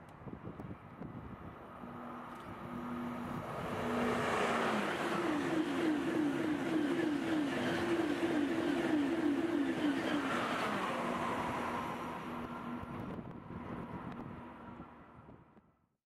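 Eurostar Class 373 high-speed electric train passing at speed. A rush of wheel and air noise builds up, and about five seconds in the hum of the train drops in pitch as it goes by. A rhythmic pulsing hum follows while the long set passes, then the sound fades away.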